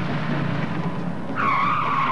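A car's tyres screech in a skid under hard braking, a loud squeal starting about a second and a half in, after a low steady running sound.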